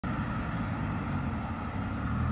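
Supercar engine running at low speed, a steady low rumble as the car rolls slowly.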